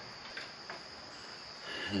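Two faint clicks as the steel tire-changer frame and bead-breaker arm are handled, over a steady high-pitched background tone.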